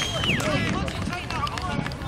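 Young footballers shouting and chattering on an open pitch as they celebrate a goal. A high held tone sounds at the start and ends about half a second in.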